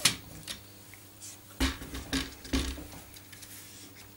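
A handful of light knocks and clatters as the hand-built AxiDraw pen plotter's plastic carriage parts and acrylic base are handled and turned round on the table, the loudest knocks a little past halfway through.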